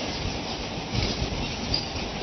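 Steady background hiss with a low, uneven rumble beneath it.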